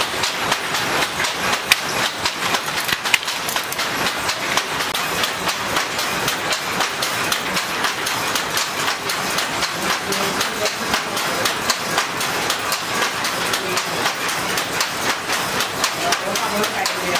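Hand looms at work, making a continuous, dense, irregular wooden clacking of shuttles and beaters.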